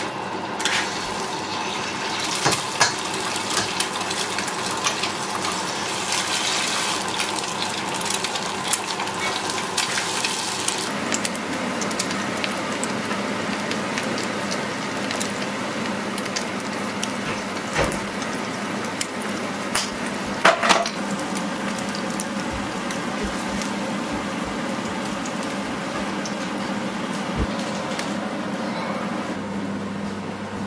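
Eggs frying in hot oil in a frying pan: a steady sizzle, strongest for the first ten seconds or so after they go into the pan, then softer. Scattered clicks and taps of shell, utensils and pan run through it.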